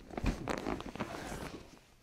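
A quick cluster of cracks from a thoracic spine adjustment, pressed down through the crossed arms of a patient lying face up, mixed with rustling of clothing and the padded table as the pressure comes off.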